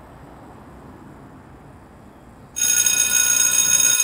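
Electric school bell ringing loudly. It starts suddenly about two and a half seconds in, over faint outdoor background noise.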